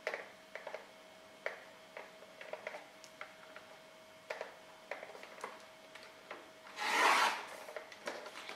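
Sliding-blade paper trimmer cutting through black cardstock in one rasping stroke of about half a second near the end. Before it come a few light ticks and taps as the card is positioned on the trimmer.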